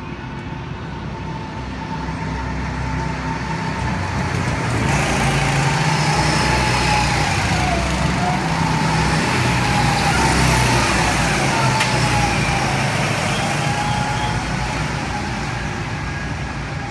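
Go-karts' small engines running as a group of karts approaches and passes on the track. The sound builds over the first few seconds, is loudest in the middle with an engine whine that dips in pitch as they go by, then eases off near the end.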